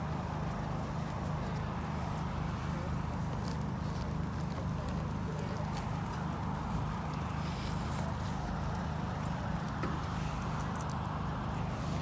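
Steady low rumble of outdoor background noise, with a few faint clicks.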